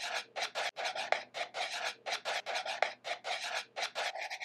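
Marker pen writing on a black board: a quick run of short, scratchy strokes, several a second, as the letters are drawn.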